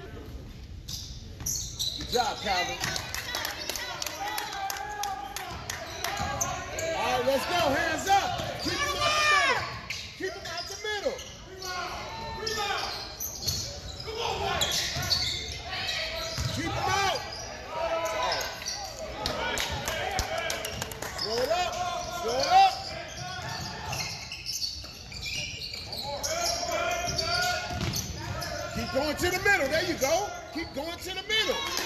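Basketball game play on a gym's hardwood floor: the ball bouncing, sneakers squeaking in short chirps, and players' and spectators' voices, all echoing in the hall. One louder knock stands out about two-thirds of the way through.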